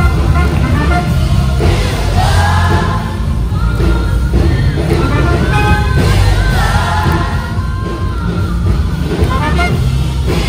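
Live worship music from a choir and band, with a strong, steady bass under the singing.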